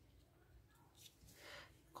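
Near silence, with a faint brief rustle of hands handling the ribbon-wrapped plastic headband about one and a half seconds in.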